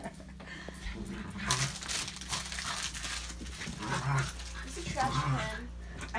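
A small dog whining a few times, in short calls.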